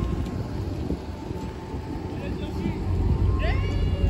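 Dodge Charger Scat Pack's V8 idling with a mid-muffler delete, a steady low rumble that grows louder about three seconds in. Faint voices are heard in the background.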